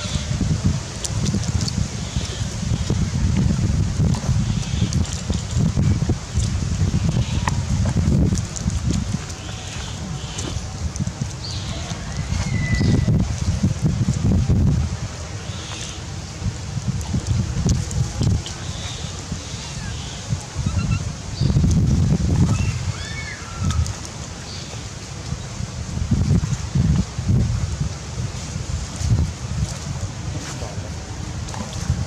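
Wind buffeting the microphone in uneven gusts, a low rumble that swells and eases. A few faint high squeaks or chirps come through, around the middle and again about two-thirds through.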